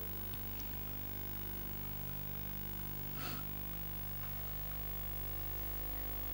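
Steady electrical mains hum with no speech, and a brief faint rustle-like noise about three seconds in.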